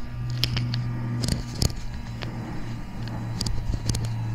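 Scattered light clicks from handling a rifle and its digital day/night scope while the view is zoomed in, over a steady low hum.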